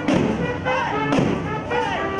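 Live brass street band playing: sousaphone, trombone, saxophones and trumpets over large surdo drums and a snare, with the drums keeping a steady beat of strokes about every half second.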